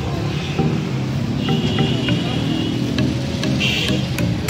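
Road traffic noise from cars stuck in a traffic jam, with engines running, under a background song.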